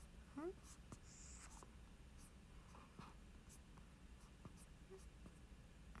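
Near silence: quiet room tone with a few faint ticks and one short murmured vocal sound just after the start.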